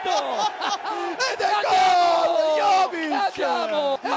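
A football commentator laughs, then lets out a long, wordless celebratory yell, slowly falling in pitch, for a goal just confirmed after a VAR check.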